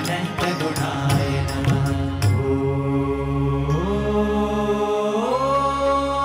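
Devotional kirtan music: keyboards with drum strokes for about the first two seconds, then the drums stop and a long chanted note is held over a steady drone, sliding up in pitch twice.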